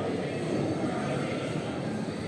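Indoor ice rink ambience during hockey practice: a steady low rumble filling the hall, with muffled voices of players and coaches in the background.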